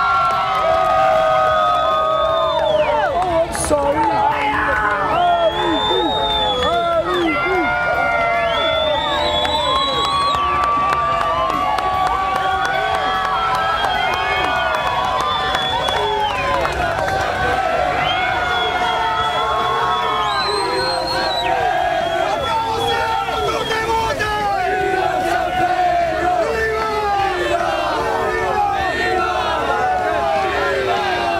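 A crowd of men cheering and shouting continuously, many voices at once with long held yells, celebrating the greasy pole winner as he is carried aloft with the flag.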